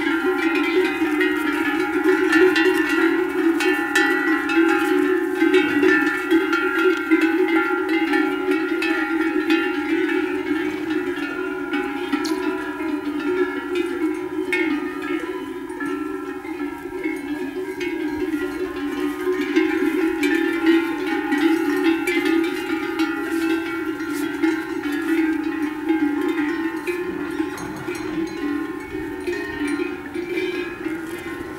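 Many livestock bells on grazing cows and a mare clanking and ringing together without a break, a dense overlapping jangle of deep and higher-pitched bells.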